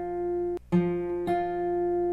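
Bedell steel-string acoustic guitar fingerpicked high on the neck: ringing melody notes that are damped for a moment about half a second in, then two more notes plucked.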